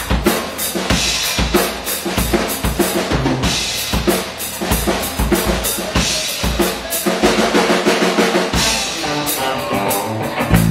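Live rock band playing: a drum kit beat with kick drum and snare to the fore, under electric guitars. The guitar chords come forward in the last few seconds.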